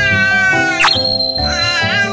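Background music with a baby's high-pitched squeals over it: one long drawn-out squeal that sags a little in pitch, then a short glide and a shorter squeal that rises and falls near the end.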